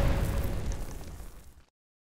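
Cinematic boom sound effect on an end logo sting, its rumbling tail dying away and gone after about a second and a half.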